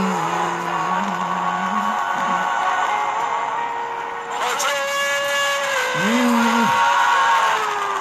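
Gospel worship song: a man sings long held notes that glide from one pitch to the next, over instrumental backing.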